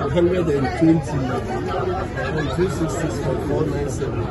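Speech only: several people talking at once in overlapping chatter.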